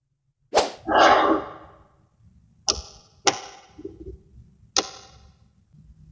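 Magnet balls clicking together: a sharp click and a short clatter about half a second in, then three single sharp clacks, about two and a half, three and four and a half seconds in.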